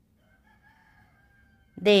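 A faint, long pitched call in the background, held for about a second and a half, carrying the sound of a rooster crowing. A woman's voice starts just before the end.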